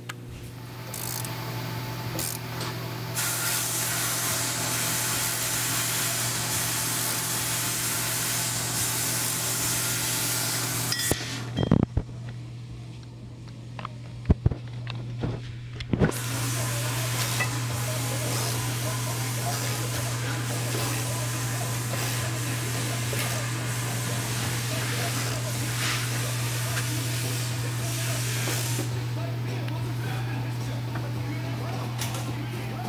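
A steady hiss over a constant low hum, which cuts out for about five seconds midway while a few sharp knocks are heard, then resumes.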